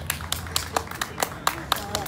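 Scattered hand claps from a small audience, a few claps a second at an uneven pace.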